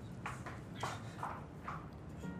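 About five light, short knocks or taps at irregular spacing, each one brief and sharp.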